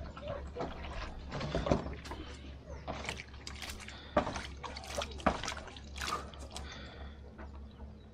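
Water poured from a plastic jerrycan into a plastic basin, then splashing irregularly as hands scoop and swish it for face washing.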